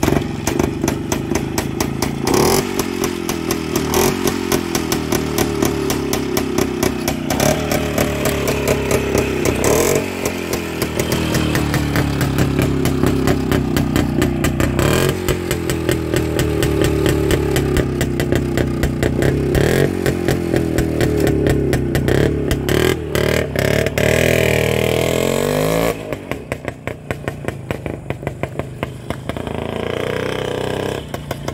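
A 1963 WSK motorcycle's two-stroke single-cylinder engine catches on the kick-start right at the start and runs, revved up and down again and again; its carburettor has just been reassembled. Near the end it drops in level as the bike rides off.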